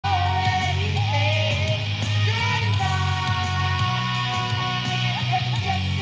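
Karaoke singing: a voice singing a melody into a microphone over a rock backing track with guitar and a steady bass, played through the bar's PA.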